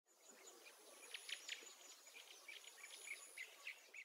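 Faint outdoor nature sounds: many short bird chirps, with a thin, high insect-like tone sounding twice over a low hiss.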